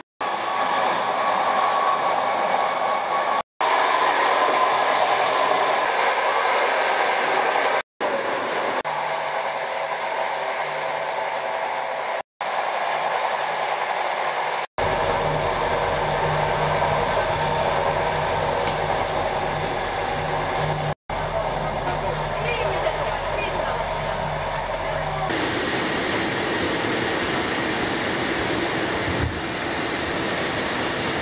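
Steady rumble and rush of a moving passenger train heard from inside the carriage, with a low hum in places. It comes in several stretches, each cut off abruptly by a brief drop to silence, and changes character about 25 seconds in.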